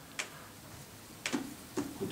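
Three soft clicks in a quiet pause: one shortly after the start, then two close together in the second half.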